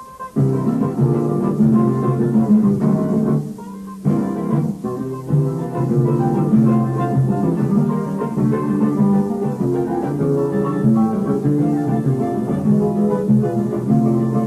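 Instrumental choro played by a small string ensemble: plucked guitars carry a lively melody over a low bass line. The playing breaks off briefly at the very start and again just before the four-second mark, then runs on without a break.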